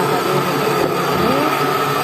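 A steady, loud whirring of a small motor running without a break.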